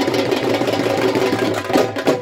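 Dhol drum played in a fast roll, the strokes running together, then breaking into separate strong beats near the end.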